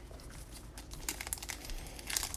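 Foil trading-card pack wrappers crinkling lightly as a pack is picked from a stack and handled, as faint, scattered crackles starting about half a second in.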